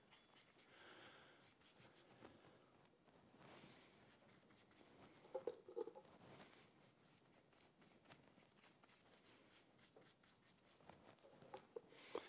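Near silence, with faint brushing as machinist's layout fluid (Dykem) is brushed onto the steel shank of a hardy tool. There are a few slightly louder soft knocks about five and a half seconds in.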